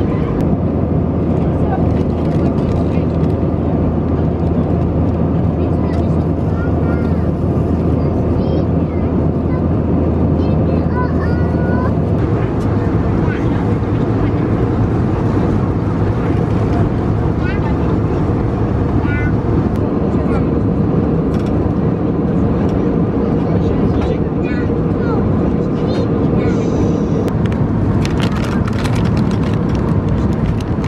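Steady, loud cabin noise of an Airbus A320-family airliner in flight: engine and airflow noise with a low hum, which drops away about twelve seconds in. Faint voices of other passengers come through now and then.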